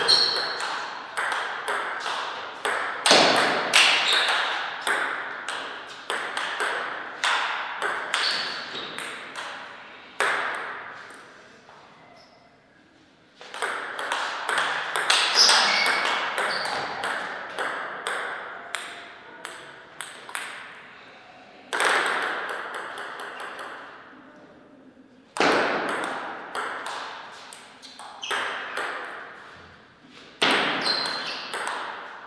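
Table tennis ball clicking back and forth between rubber paddles and the table in quick rallies. There are about four rallies, with short pauses between points, and each click rings off briefly.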